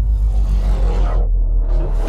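Deep, sustained sub-bass boom from an electronic logo stinger, with a whoosh sweeping up near the end.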